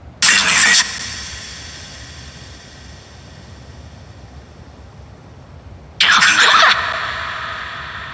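Two short bursts of harsh, crackly noise from a ghost-hunting spirit box, one near the start and one about six seconds in, each trailing off in a long echo. The ghost hunter hears them as laughter, a 'ha ha'.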